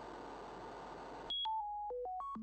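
Steady synthesized noise hiss from a ChucK program cuts off suddenly about a second and a quarter in. A sine-oscillator arpeggio then starts: pure electronic beeps at random pitches, one short high note followed by three lower notes of falling pitch.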